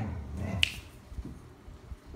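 A low, muffled sound at the start, then a single sharp click about half a second in, with a few faint ticks after it.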